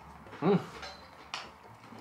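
A man's short 'mmm' of approval, then about a second later a single sharp clink, typical of a ceramic tea mug.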